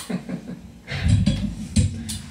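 A woman laughing close to a microphone, with loud low thumps and rumble from the second half as the microphone is handled and lifted off its stand.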